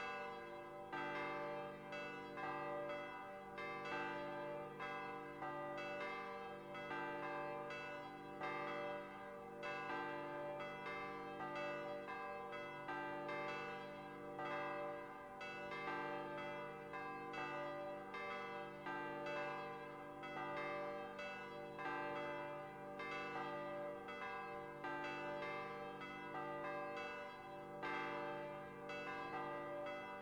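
Church bells ringing continuously: many bells struck in rapid succession, roughly three strikes a second, their tones ringing on and overlapping.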